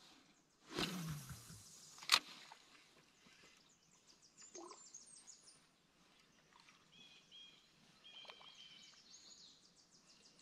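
Songbirds singing around a still lake: fast high trills and short whistled notes. Early on there is a brief rustling noise and then a single sharp click, the loudest sounds.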